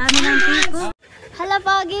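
A camera shutter click over loud voices for about the first second, then a sudden cut to silence and a voice speaking.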